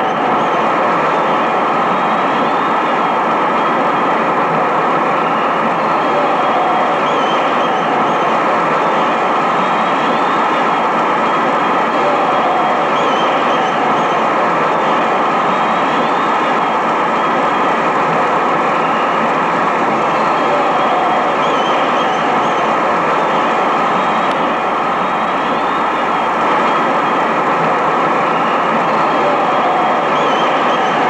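A loud, steady rushing noise with no change in level.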